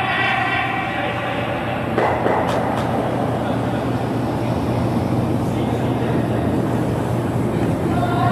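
Curling stone running on the pebbled ice with brooms sweeping in front of it, a steady train-like rumble. The noise grows louder about two seconds in, with a couple of sharp clicks soon after.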